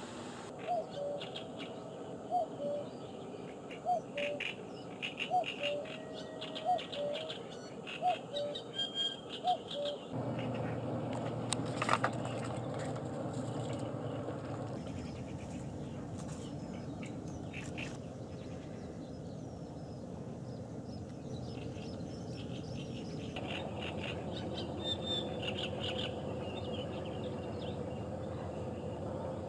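Birds calling: a short pitched call repeated about once a second, with higher chirps, through the first ten seconds. After an abrupt change about ten seconds in there is a steady outdoor background, and more high chirps come near the end.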